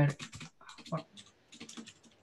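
Computer keyboard keys clicking in short irregular runs of keystrokes as code is typed.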